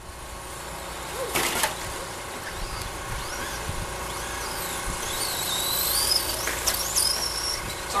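Electric RC short-course trucks' motors whining, the pitch rising and falling as they speed up and slow through the corners on a dirt track. There is a brief rush of noise about a second and a half in.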